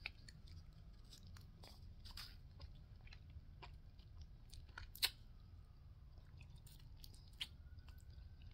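Faint biting and chewing of a shortbread cookie: scattered soft crunches, with one sharper crunch about five seconds in.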